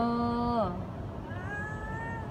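A mother cat meowing back at a woman who is talking to her: one drawn-out meow that rises and then falls, starting about one and a half seconds in.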